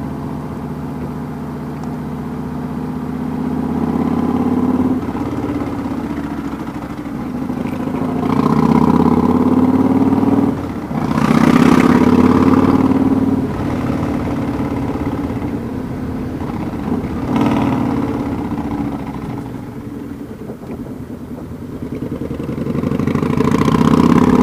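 Loud exhaust of a 2009 Yamaha Raider S V-twin, straight-piped since its baffle fell off, heard while riding. The engine note climbs in pitch several times with a brief dip about eleven seconds in, eases off past the middle and picks up again near the end.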